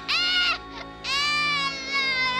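A boy wailing without words with his tongue frozen to a metal pole: a short cry, then a long held cry from about halfway through.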